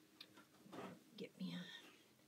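Faint, low murmured speech, close to whispering, with a light click near the start.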